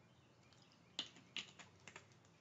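Near silence broken by a few faint, sharp clicks and crackles starting about a second in, as a plastic water bottle is handled and lowered after a drink.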